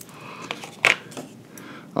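A few light, short clicks of scissors and a thin metal matrix band being handled, the sharpest a little under a second in.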